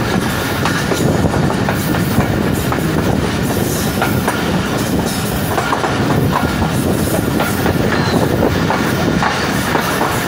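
Passenger train coach running along the track, heard at the open coach door: a steady rumble with the wheels clattering irregularly over the rail joints.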